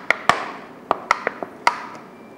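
Thin plastic water bottle crackling and popping as it is squeezed and released by hand: a string of about seven sharp, uneven clicks.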